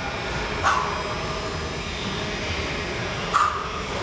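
Steady low rumble of room noise, with two short, sharp breathy exhalations, one about a second in and one near the end, from someone straining through sit-ups.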